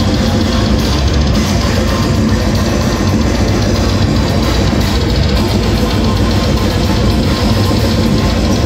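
Grindcore band playing live: drum kit with electric guitar and bass, distorted, in a loud, dense and unbroken wall of sound.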